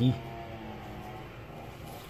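Steady background hum with a constant low tone, the tail end of a spoken word at the very start.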